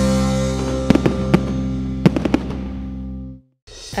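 Edited rock music on a long, fading chord, with several sharp fireworks cracks over it. It stops suddenly near the end, and a short jingle starts.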